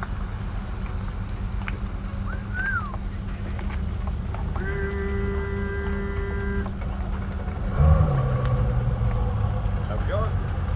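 Boat outboard motors running at idle, a steady low rumble, with a steady tone held for about two seconds midway and a motor growing louder about eight seconds in.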